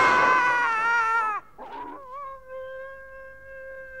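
A man's long, high-pitched scream, falling slightly in pitch and cutting off about a second and a half in. From about two seconds in, a steady held musical note follows.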